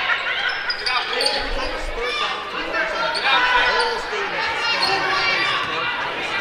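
Basketball being dribbled on a hardwood gym floor, with sneakers squeaking and players' and spectators' voices echoing in the gym.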